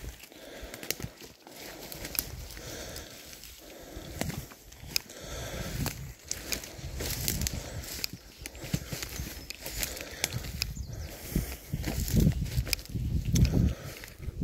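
Footsteps of someone walking briskly through dry forest brash and rough grass, twigs snapping and crackling underfoot, with heavier low thuds near the end.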